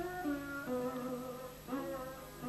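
Background music: a slow melody of held notes that step up and down in pitch, over a steady low note.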